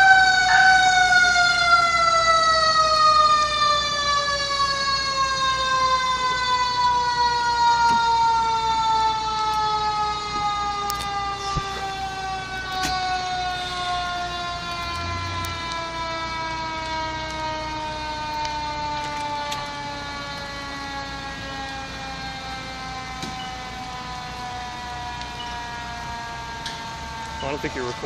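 Fire engine's mechanical siren winding down after being sounded. One long, slowly falling wail, with its pitch and loudness sinking steadily as the rotor coasts to a stop.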